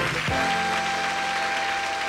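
A sitcom theme tune ending on a long held note, over a studio audience applauding.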